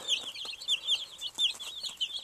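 A flock of baby Cornish cross broiler chicks peeping: many short, high chirps overlapping several times a second.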